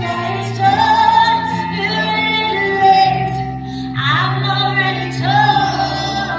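A female lead vocal singing a pop ballad live, with held notes, over sustained keyboard chords and acoustic guitar accompaniment.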